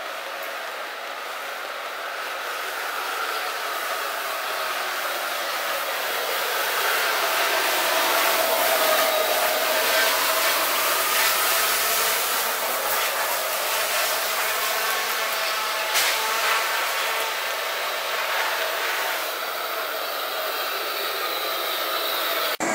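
High-pressure washer spraying water, a steady hiss that grows louder over the first several seconds and eases a little toward the end.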